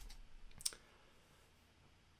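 Two faint clicks from computer input, a mouse or key press at a laptop, the second louder, about two-thirds of a second in.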